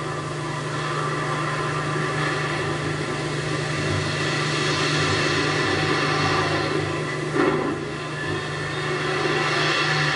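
Onboard camera audio from a tumbling, spent Space Shuttle solid rocket booster after separation: a steady low hum under a rushing hiss, with a brief knock about seven and a half seconds in.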